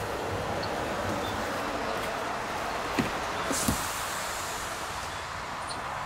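EV fast-charger cable and plug being handled at a car's charge port, with a sharp click about halfway through and a brief hiss just after, over a steady background noise.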